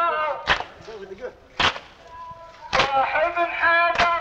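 A crowd of mourners beating their chests in unison (latm), a sharp slap about once a second, between lines of a men's chanted lament. The chanting drops away for a moment in the middle while the strikes keep time.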